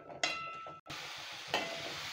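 Onions and tomatoes sizzling as they fry in oil in a stainless steel pan while a steel ladle stirs them; the steady sizzle comes in abruptly about a second in.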